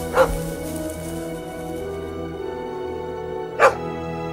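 A dog barking twice, two short sharp barks about three and a half seconds apart, over steady background music.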